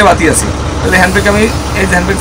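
A man talking over the steady low idle of a double-decker bus's diesel engine.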